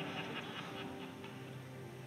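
Soft background music with sustained, held notes; a low note comes in at about the middle.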